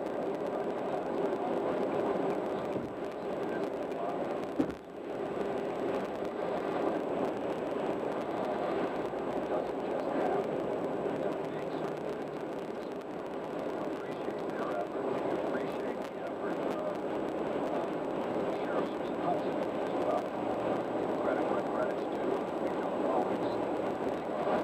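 Steady road and tyre noise of a car travelling at freeway speed, with one sharp click about five seconds in and a short dip in level after it.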